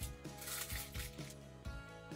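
Background music with held notes and a soft beat.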